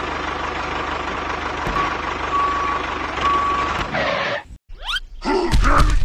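Tractor engine sound running steadily with a fast low chug, with three short reversing beeps in the middle. It cuts off about four and a half seconds in, and a loud grunt-like voice sound starts near the end.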